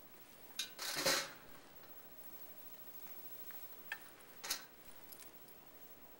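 Hair rollers and their metal roller clips being handled: a short clatter about a second in, then two sharp clicks around four seconds in.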